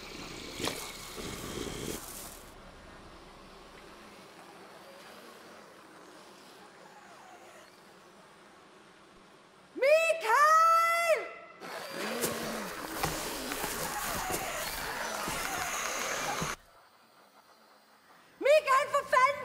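A woman shouts the name "Mikael!" twice about ten seconds in, after a long quiet stretch. A few seconds of harsh, rough noise follow and cut off suddenly.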